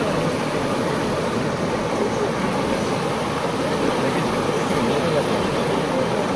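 Shallow mountain stream rushing steadily over rocks right at the microphone, a constant loud water noise, with faint voices of people in the background.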